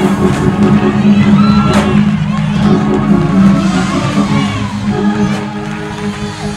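A church keyboard holds a low sustained chord while the congregation shouts and cheers in response to the sermon's climax. The whole slowly grows quieter toward the end.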